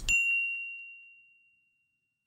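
A single high-pitched ding, a stopwatch-bell sound effect, struck once and ringing out as it fades away over about a second and a half.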